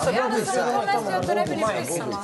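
Speech only: several people talking over one another, with no other sound standing out.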